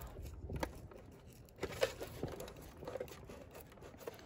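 Thin protective plastic film being peeled off a vacuum cleaner's base plate: faint crinkling and tearing crackles, with a few sharper crackles spread through.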